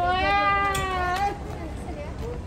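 A person's voice holding one long drawn-out note for just over a second, rising a little and then falling away, over a steady low hum.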